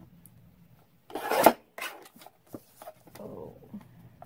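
A sheet of paper being turned over and slid across a paper trimmer into position: one loud rasping rub about a second in, then a few light taps and a softer rub.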